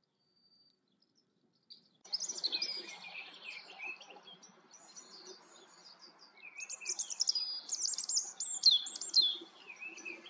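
Near silence for about two seconds, then songbirds singing: a busy run of high chirps and whistles over a faint hiss, growing louder near the end.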